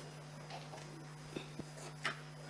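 Faint room tone over a public-address feed: a steady low mains hum, with two small soft clicks about one and a half seconds in.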